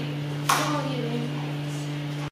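A sharp click about half a second in, as a locking caster brake on the sewing-machine table's leg is pressed down, over a steady low hum.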